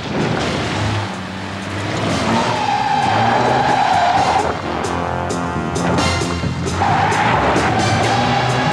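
Car tyres squealing in two long skids, the first about two seconds in and the second near the end, over car noise and background music.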